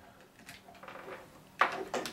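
Handling noise from a desk microphone base and its cable: faint rustles, then two short knocks near the end.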